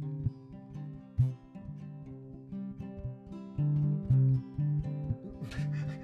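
Acoustic guitar picking a song's intro: low bass notes on a steady pulse with higher notes ringing above them.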